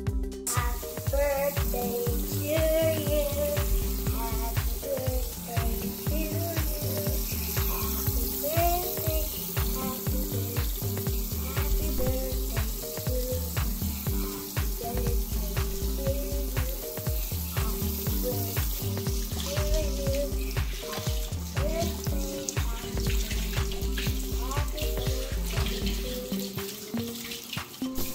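Water running from a kitchen faucet into a stainless steel sink while hands are scrubbed and rinsed under it, over background music with a steady beat.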